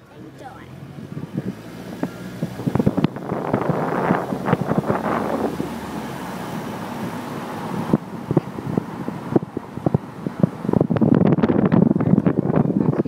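A car driving, heard from inside the cabin: steady road and wind noise with scattered small knocks, and indistinct voices. It grows louder toward the end.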